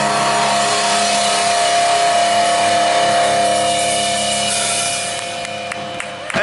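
Live rock band holding out the final chord of a song, electric guitars and bass ringing steadily in a dense, loud wash that starts to fade near the end.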